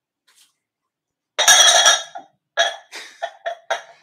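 A person coughing: one loud, hard cough about a second and a half in, then a run of several shorter, weaker coughs.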